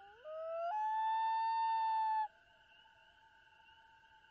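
A common loon's wail: a call that climbs from low in stepped breaks to a long held note, then cuts off abruptly, over a faint steady background.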